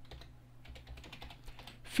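Typing on a computer keyboard: a run of light key clicks as a LOAD command is entered.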